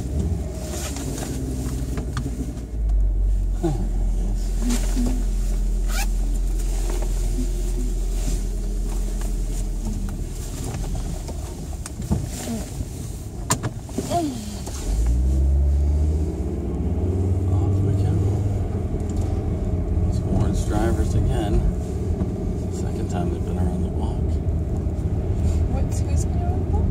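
Inside a moving SUV's cabin: steady low engine and road rumble, with a few sharp clicks about twelve to fourteen seconds in. The engine note then rises as the car speeds up and settles into a steady drone.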